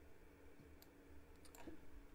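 Near silence with a faint low steady hum and two faint clicks, one a little before the middle and one about three-quarters of the way through.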